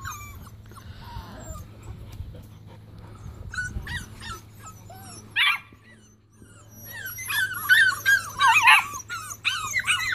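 A litter of Bearded Collie puppies whining and yipping in short, high-pitched squeals. The cries are scattered at first, with one loud cluster about five seconds in, then many overlapping whines crowd together in the last three seconds.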